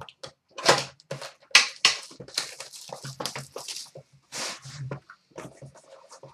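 Plastic shrink-wrap on a sealed cardboard hockey card box crinkling and tearing as it is cut open and pulled off, in a run of irregular crackles and rips.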